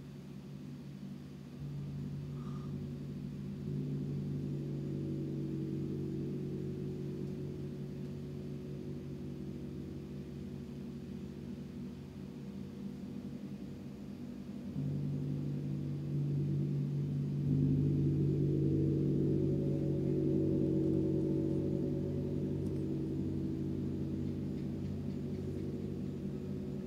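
Large hanging gongs played softly, giving a low, sustained hum full of overlapping tones. It swells in steps, rising about a quarter of the way in and again past the middle, and is loudest about two-thirds through.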